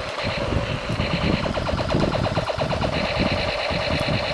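Battery-operated toy machine gun running its electronic firing sound: a steady electronic tone with a rapid, evenly repeating rattle.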